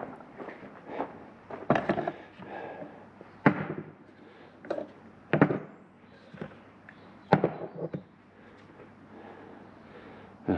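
Steel tractor link balls clunking against a metal jug as they are fished out of the diesel they have been soaking in: half a dozen sharp knocks, unevenly spaced, with quieter handling between.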